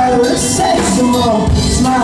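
Live rock band playing: a male lead vocal sung over drum kit and guitar, loud and close to the PA.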